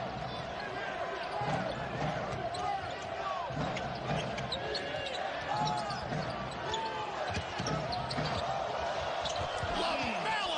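A basketball being dribbled on a hardwood court, with sneakers squeaking and a steady arena crowd murmur behind.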